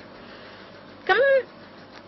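A pause in a woman's speech: low steady room hiss, with one short spoken word about a second in, its pitch rising and then falling.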